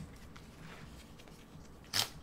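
Quiet handling of HIFIMAN Ananda headphones as their headband is adjusted, with one sharp click near the end.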